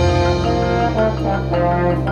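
Symphonic band music with trombones prominent: a held low note underneath a melody of short notes that step up and down.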